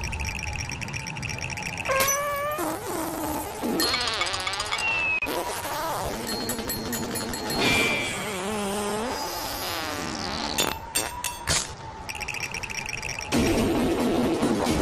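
Animated cartoon soundtrack: background music under wavering, gliding pitched cartoon sound effects, with a quick run of sharp clicks a little past the middle.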